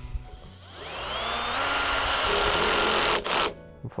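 Makita HP457D 18V cordless drill-driver driving a long screw into wood on its lowest clutch setting, 1. The motor whine rises in pitch as the trigger is squeezed, holds steady, then stops about three seconds in, followed by a short knock.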